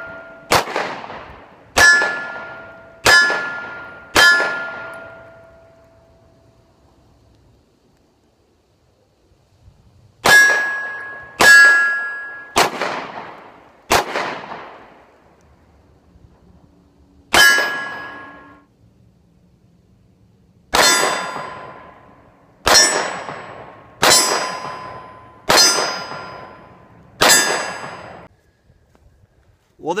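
9mm Glock 19 pistol shots, each followed closely by the ring of an AR500 steel silhouette target being hit. There are fourteen shots in strings: four quick ones at the start, four more after a pause of about six seconds, a single shot, then five more near the end, each ring dying away over a second or two.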